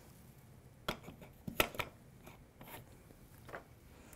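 Faint, scattered clicks and taps of cardstock and a small craft tool being handled on a tabletop. The sharpest ticks come about a second and a half in.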